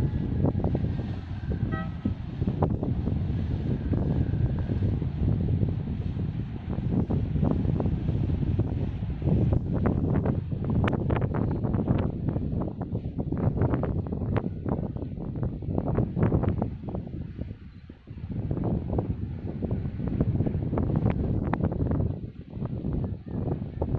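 Gusty wind buffeting the microphone: a loud, uneven low rumble that swells and dips.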